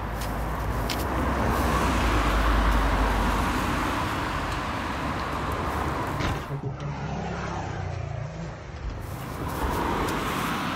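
Road traffic on a residential street, with a car passing by that is loudest two to three seconds in. The sound changes abruptly about six and a half seconds in, and steadier traffic noise follows.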